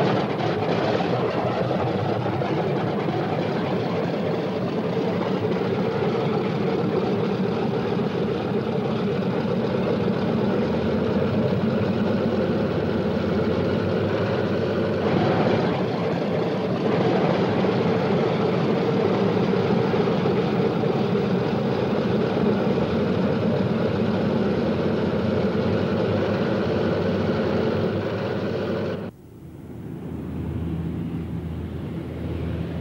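Piston radial engines of a Douglas C-47 Dakota gunship running on the ground, a steady, even drone with a brief swell about halfway through. It cuts off sharply near the end.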